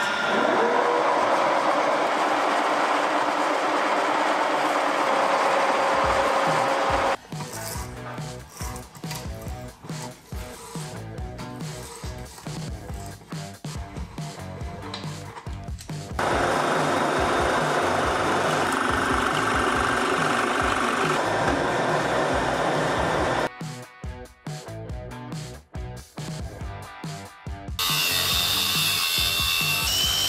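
Steel being bored out on a metal lathe, a steady machining noise for the first several seconds, alternating with background music with a beat. An angle grinder cutting steel comes in near the end with a high whine.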